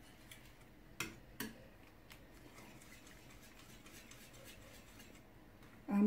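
Faint clicks and taps of a wire whisk against a ceramic bowl while stirring a runny egg batter, the sharpest two about a second in, then only faint stirring.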